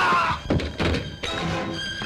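Dramatic film-score sting: a loud musical rush, then two sharp thuds about half a second in, settling into held orchestral string chords.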